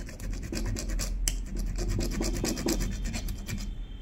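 Rapid scratching strokes, several a second, of a thin metal tool scraping at the shaft end of an Usha sewing-machine motor, picking out the thread fluff wound around the shaft.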